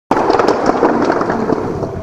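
Concert audience applauding, a dense clatter of many hands that cuts in abruptly just after the start.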